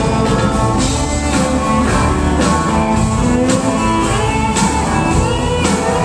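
Live country rock band playing a loud, steady instrumental passage on acoustic and electric guitars, with drums keeping the beat.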